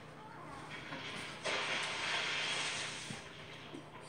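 A rustling hiss lasting about a second and a half, beginning over a second in, with faint voices before it.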